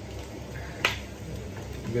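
One sharp clack about a second in as the hot inner pot of a rice cooker is lifted out with a tea towel, over a low steady background.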